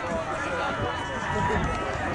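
Several distant voices of players and sideline onlookers calling out and talking over one another across an open playing field, with a rough low rumble underneath.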